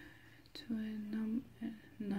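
A woman's voice, speaking quietly and almost under her breath in short, level-pitched stretches, with a small click just before she starts.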